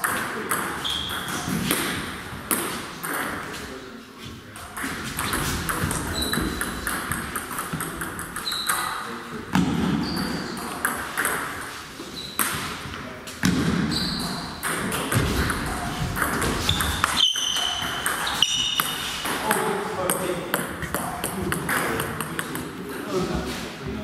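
Table tennis balls clicking off bats and the table in a run of rallies, the hits coming in quick irregular series with pauses between points.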